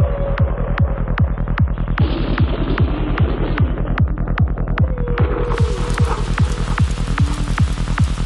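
Psytrance track playing: a steady four-on-the-floor kick drum with a rolling bassline under a held synth tone and a rain-like hiss. About five and a half seconds in, the hiss opens up and brightens.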